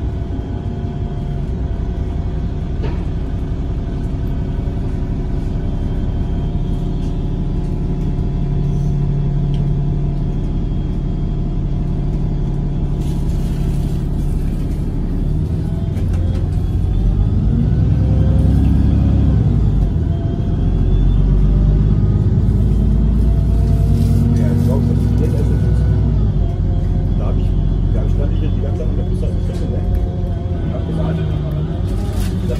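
Inside a moving city bus: a steady engine rumble with a drivetrain whine. Partway through, the rumble swells and the whine rises and falls in pitch as the bus speeds up and slows down.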